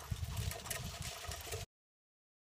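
Dog-pulled suspension sulky rolling over a sandy dirt track: irregular low bumps and light rattling. The sound cuts off abruptly after about a second and a half.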